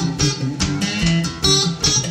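Delta blues guitar break on a box-bodied guitar: a run of quick plucked notes and strums between sung lines.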